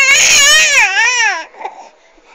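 Infant's loud, high-pitched vocal squeal lasting about a second and a half, its pitch sliding up and down, then dropping away.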